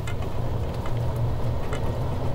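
John Deere Gator utility vehicle driving along a paved path, giving a steady low rumble.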